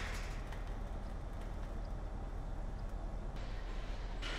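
Steady outdoor background noise: a low rumble and hiss with no distinct events. The higher part brightens slightly near the end.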